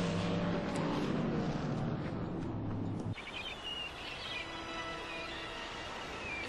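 A car engine running steadily, cut off abruptly about three seconds in. It gives way to soft music with birds chirping.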